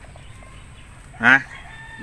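A rooster crowing: a short call about a second in, then a long held call beginning at the very end.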